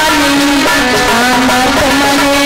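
A woman singing a devotional bhajan into a microphone, holding long notes with sliding turns between them, over amplified instrumental accompaniment.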